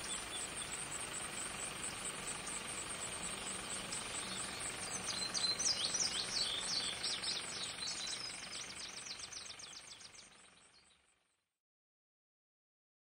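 Outdoor ambience with a faint steady background and a thin high whine, and birds chirping in a quick run of calls from about the middle. It all fades out shortly before the end.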